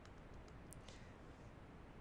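Near silence: quiet room tone with a few faint, scattered clicks from a dashed line being drawn on screen.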